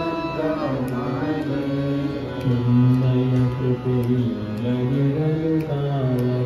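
A group singing a bhajan, a Hindu devotional song, together in long held notes that glide slowly between pitches. Faint, evenly spaced light clicks keep the beat.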